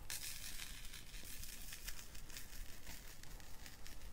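Baked Texture embossing powder being poured from a small plastic jar onto paper, a faint, steady hiss of fine grains.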